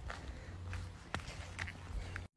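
Faint footsteps on a dry dirt trail: a few soft steps over a low steady rumble.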